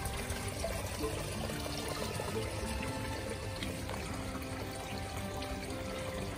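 Water trickling and pouring through a hydroponic growing system, steady throughout, with music of held notes playing underneath.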